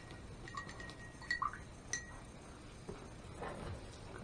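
A paintbrush being rinsed in a glass jar of water, tapping and clinking against the glass several times in the first two seconds, each clink ringing briefly.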